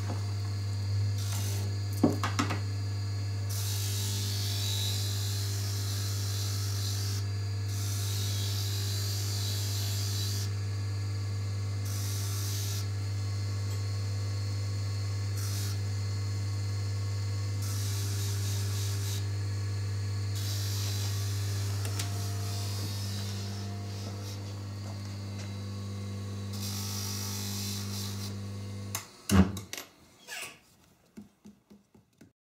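Red Wing bench polishing motor running with a steady hum while a ring is pressed against its spinning polishing wheel, giving repeated spells of hissing rub. There are a few clicks about two seconds in. Near the end the motor's hum cuts off, followed by a couple of knocks.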